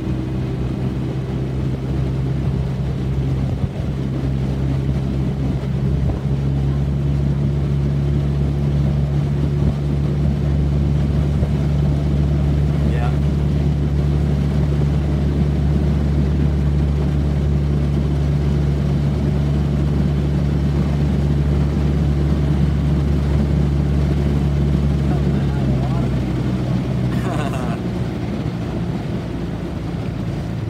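Small outboard motor of a motor launch running steadily at low throttle, a low, even hum over water and wind noise; the hum eases slightly near the end.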